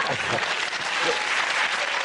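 Studio audience applauding: dense, steady clapping that marks the end of a round.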